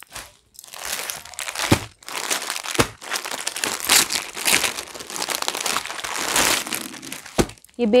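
Clear plastic garment packet crinkling and rustling as a folded suit is handled and slid out of it, with a few dull knocks on the table in between.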